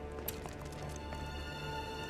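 Quiet background music of sustained, held tones, with a few faint footsteps in the first second.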